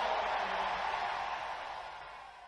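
Faint, even crowd noise from a congregation, fading away gradually.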